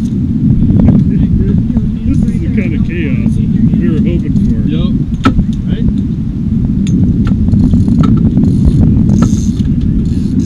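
Steady low rumble on a boat deck with scattered sharp clicks and knocks from fishing rods and reels, and faint voices underneath.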